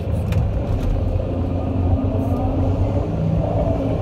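Excavator's diesel engine running steadily with a low rumble, heard from inside the cab.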